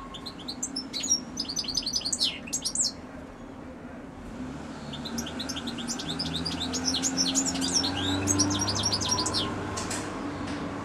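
European goldfinch singing: fast twittering phrases of short high notes, one phrase in the first three seconds, a brief pause, then a longer phrase from about five seconds in until near the end.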